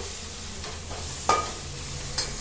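Browned onions and ground spices sizzling in a metal pan while a metal spoon stirs them, with one sharp clink of the spoon against the pan a little over a second in.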